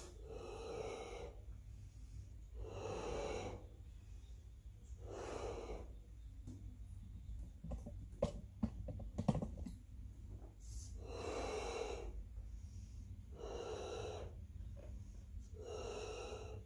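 A woman blowing up a latex balloon by mouth: repeated breaths, each about a second long, come every two to three seconds as the balloon fills. In the middle the breaths pause for a few seconds, and a flurry of sharp clicks and rubbing sounds is heard.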